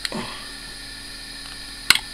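Back cover of a Motorola C350 mobile phone being pried off by hand, unlatching with one sharp click near the end.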